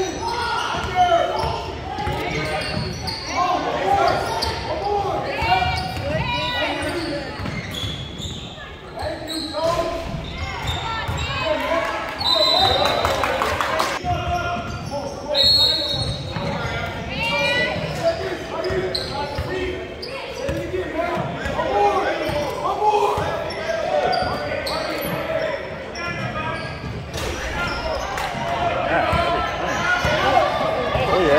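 A basketball being dribbled and bounced on a hardwood gym floor during play, the thuds echoing in the large hall, amid shouting voices of players and spectators.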